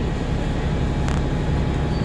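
Steady low drone of a bus heard from inside the passenger cabin as it moves slowly, with one brief click about a second in.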